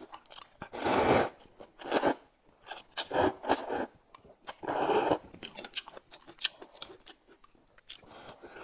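Loud slurping of hot and sour noodles (suan la fen), several long slurps about a second apart in the first five seconds, with chewing and small clicks of chopsticks and a spoon between them.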